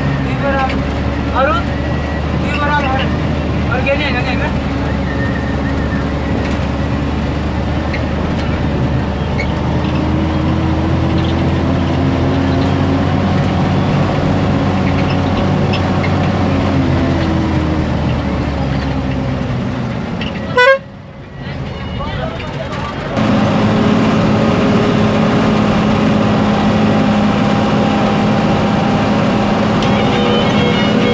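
Vehicle engine running with road noise, heard from inside the vehicle while driving: a steady drone. About twenty seconds in it breaks off with a click, dips for a couple of seconds, then comes back as a steady hum at a different pitch.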